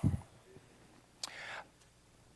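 A pause in a man's speech at a microphone: his last word trails off at the start, then near quiet, broken by one soft, short hiss a little past the middle.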